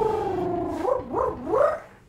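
A man's voice holding one long, high, wavering note that slides slowly down, then breaks into two quick up-and-down swoops and stops just before the end.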